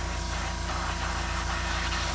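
Steady motor hum with an even hiss of air from an airbrush rig, running as white base paint is sprayed onto a lure.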